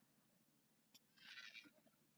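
Near silence, with one faint, brief sound a little past halfway.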